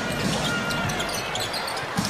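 Basketball game sound: steady arena crowd noise with a ball being dribbled on the hardwood court and short, high squeaks scattered through it.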